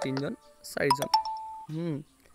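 A two-note electronic chime about a second in, the second note slightly lower and held longer, with bits of speech on either side.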